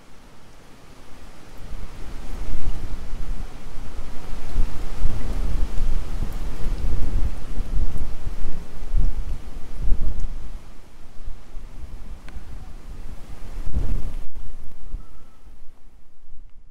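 Thunderstorm: a low rumble of thunder with wind and rain. It swells up about two seconds in, runs on unevenly, and swells again near the end.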